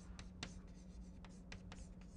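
Chalk writing on a blackboard: a series of faint short taps and scratches as the chalk strokes out letters.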